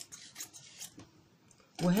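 Fabric scissors cutting through cloth in a run of short, crisp snips, about two a second.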